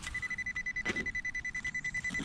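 Handheld metal-detecting pinpointer beeping rapidly on one high pitch, about seven beeps a second, as it is held close to a metal target in the dug hole, which the detectorist takes for a nail. A single knock of soil being disturbed comes just under a second in.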